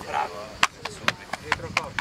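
A brief bit of a man's voice, then a quick, uneven run of sharp taps, about eight in a second and a half.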